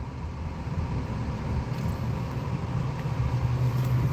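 Car cabin noise: a steady low engine and road rumble from inside a car on the move, with a low hum that grows a little louder near the end.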